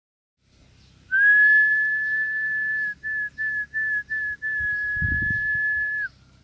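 A person whistling one steady high note: a long held note, then four short ones in quick succession, then another long one, each note dipping slightly in pitch as it ends. A few soft low thumps come near the end.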